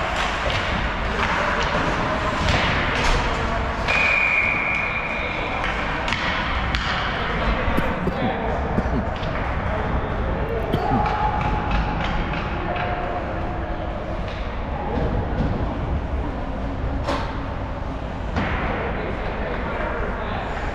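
Ice hockey play in an indoor rink, heard from the stands: voices calling out over a steady hall noise, with sticks and puck knocking now and then and sharp thuds of the puck or players against the boards, clearest about nine and seventeen seconds in. A short high steady tone sounds for about two seconds, four seconds in.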